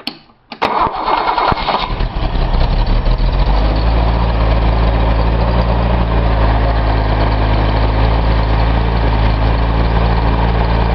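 Cold start of a Datsun L28 2.8-litre straight-six with L-Jetronic fuel injection: the starter motor cranks it for about a second and a half, the engine catches about two seconds in and settles into a steady idle by about four seconds in. It is idling on its cold-start enrichment, which the owner takes to be running rich.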